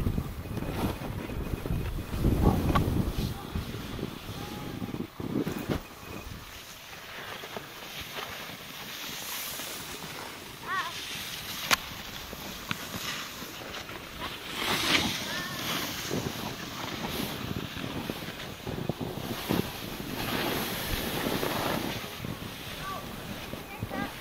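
Snowboards sliding and scraping over snow in swells of swishing noise, with wind on the microphone and faint voices now and then.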